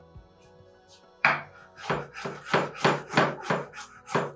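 Kitchen knife finely shredding rolled shiso leaves on a wooden cutting board: after a loud first cut a little over a second in, quick, regular knife strokes hit the board about four times a second.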